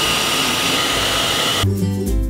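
Handheld hair dryer running steadily, a rushing blow with a thin high whine. It cuts off about one and a half seconds in, and music with a bass beat takes over.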